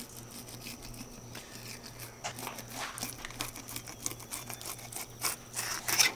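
Knife cutting along the back of a bighead carp, a run of faint irregular crackles and scrapes starting about two seconds in.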